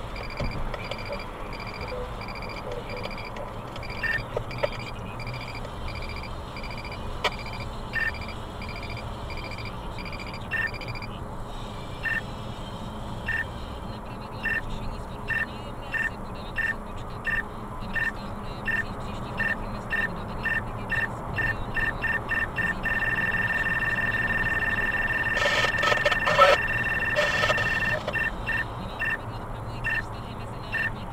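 Beltronics STiR Plus radar detector alerting over car road noise. Its single beeps, first about a second and a half apart, quicken steadily to several a second and merge into a continuous two-pitch tone for about five seconds, then break back into beeps. This is the detector's alert growing as the radar signal gets stronger.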